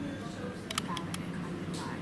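Low hubbub of a pub room with indistinct voices, and a quick cluster of about four light clicks a little under a second in.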